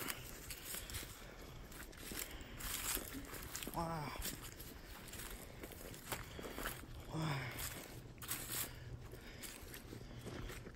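Footsteps crunching through dry leaf litter and brushing past pine branches, with a couple of short vocal sounds near the middle.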